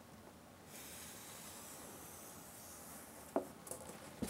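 Putty knife spreading and smoothing construction adhesive across a foam base: a faint, steady scraping hiss. It ends in a sharp tap a little over three seconds in, followed by a smaller one.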